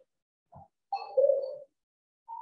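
A bird cooing: a short note about half a second in, then a longer call that drops in pitch partway through.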